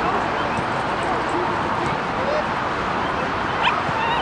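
Outdoor field ambience: a steady, wind-like noise bed with distant voices and short high calls that rise and fall in pitch, and one louder call about three and a half seconds in.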